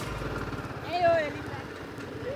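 Motorcycle engine running while riding slowly, under steady road and wind noise. A short voice call is heard about a second in.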